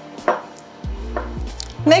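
Hands pressing a halved roll of laminated bun dough down onto the work surface: a sharp knock about a third of a second in and a softer one just past a second, over quiet background music.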